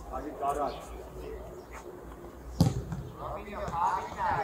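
A football being kicked on an outdoor pitch: one sharp thud about two-thirds of the way through, the loudest sound here. High-pitched voices call out before and after it.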